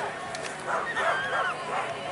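A dog barking and yipping in short calls, clustered about a second in, with voices in the background.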